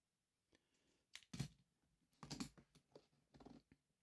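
Faint clicks and taps of Philippine 1 piso coins being handled against a magnet and on cloth: a couple about a second in, then a scatter more from about two seconds on.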